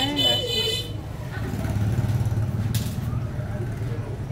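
A woman's voice briefly in the first second over a steady low motor hum, with a short high-pitched tone at the same moment and a brief hiss near three seconds.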